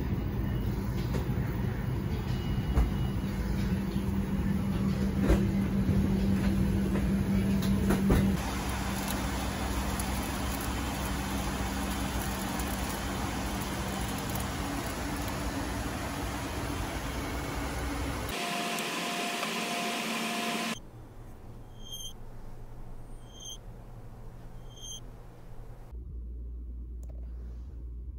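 Steady rushing cabin noise inside a Boeing 737-9 MAX airliner, with a low hum under it, for most of the first eighteen seconds. After a cut it drops to a much quieter background, with a faint high chirp repeating about every 0.7 seconds.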